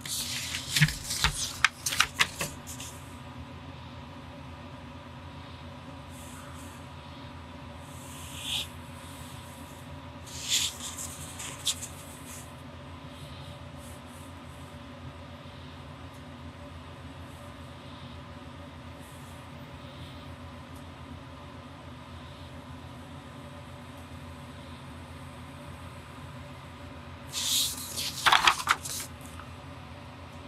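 Pen and hands on drawing paper: short scratching and rustling strokes in a few clusters, at the start, around a third of the way in, and near the end, over a steady faint room hum.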